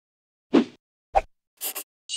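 Sound effects for an animated title logo: a plop about half a second in, a second shorter hit just after a second, and a quick high double swish near the end.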